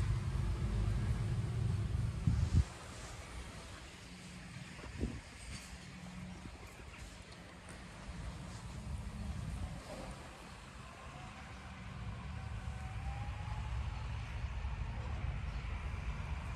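Low rumble of road traffic passing on the nearby main road. It drops away about two and a half seconds in and builds again near the end, with a faint click in between.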